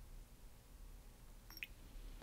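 Near silence as liquid is poured from a glass bottle into a small shot glass, with one faint, short glass tick about one and a half seconds in.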